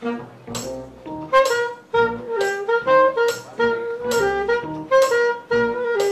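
Live small-band jazz: a saxophone plays the lead melody over upright bass and electric keyboard, with a regular beat of short chord attacks.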